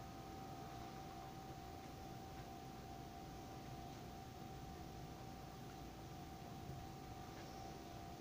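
Electric bug zapper switched on, giving a faint, steady electrical whine, with a few faint ticks.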